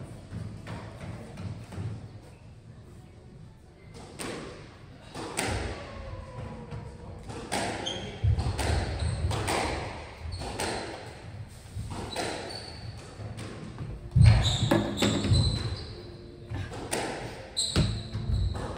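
Squash balls smacking off rackets and court walls, a string of sharp irregular impacts echoing around a large hall. The first few seconds are quieter, and the hits come thicker from about four seconds in, with the loudest one about two-thirds of the way through.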